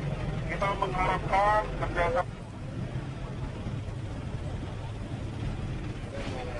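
A loud raised voice over a low rumble of street noise for the first two seconds, then the voice cuts off and a quieter steady rumble continues.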